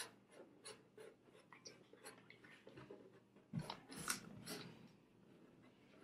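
Felt-tip marker drawing on a sheet: faint, short scratchy strokes, with a busier run of strokes a little past halfway.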